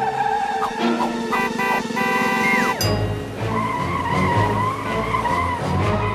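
Cartoon sound effects of a fire truck skidding and driving, over background music. A falling tone cuts off just before three seconds in, followed by a low rumble.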